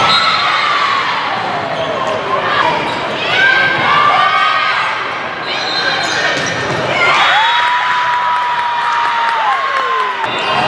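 Indoor volleyball rally: repeated ball contacts and shoe sounds on a gym floor, with players and spectators calling out. One long held tone starts about seven seconds in and falls away at the end.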